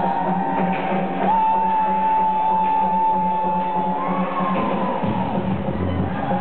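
Electronic dance music from a live DJ set, played loud over a club sound system and recorded on a handheld camera. A long held synth tone runs from about a second in until four seconds, and deep bass comes back in about five seconds in.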